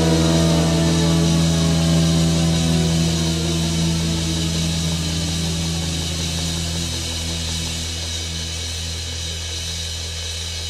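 Final chord on a Gibson Les Paul, played through a Fender '57 Tweed Deluxe amp, left ringing and slowly dying away. The higher notes fade first while the low notes hold on.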